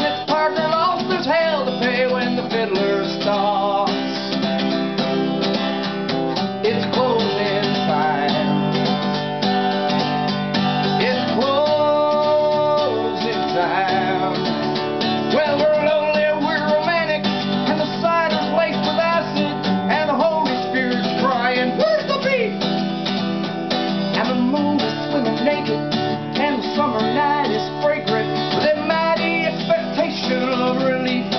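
Acoustic guitar strummed steadily with a man singing over it.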